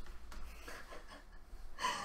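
A person breathing hard after dancing, faint at first, with a louder breath near the end.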